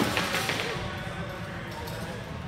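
Sparring fighters moving on a wooden gym floor: a quick run of sharp knocks and thuds in the first half second, then softer footsteps and shuffling.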